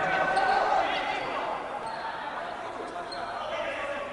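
Futsal game noise echoing in a large sports hall: indistinct shouting from players and spectators, with the scattered squeaks and thuds of play on a wooden court.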